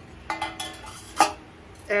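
A glazed ceramic liner clinking against a silver serving dish as it is set inside it: a ringing clink soon after the start, then a sharper knock just past the middle.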